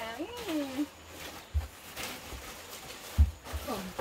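Dull low thumps, the loudest about three seconds in, with soft plastic rustling as a new mattress is pulled out of its plastic bag and settled on a bed frame. A short wordless voice sound comes near the start.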